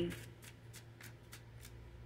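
Tarot cards being shuffled by hand: a string of faint, quick card snaps, about three a second.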